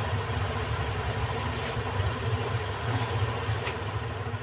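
Electric fan running: a steady low hum with an even whoosh, and two faint clicks about two seconds apart.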